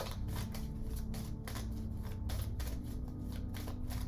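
A deck of cards being shuffled by hand: a run of quick, irregular papery snaps as cards slide and slap from one hand to the other, over a faint steady hum.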